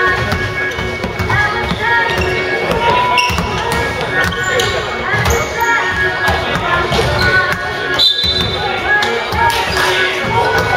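Basketball game sounds on a hardwood gym court: the ball bouncing repeatedly, with shoe noises and players' voices, over steady background music.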